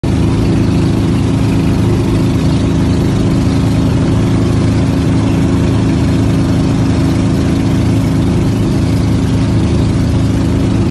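Engine of a motorized outrigger bangka boat running steadily at cruising speed, a loud, constant drone over a rushing hiss.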